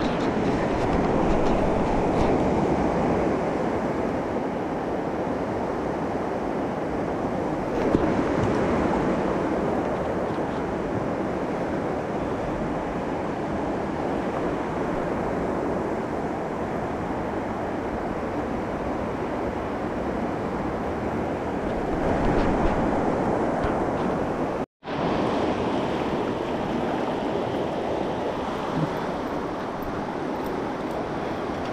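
Fast mountain river rushing over rocks: a steady whitewater rush. The sound drops out for an instant about five seconds before the end.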